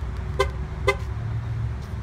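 Two short horn chirps from a 2016 GMC Yukon Denali XL, about half a second apart, over a steady low rumble, as its key-fob remote start is used.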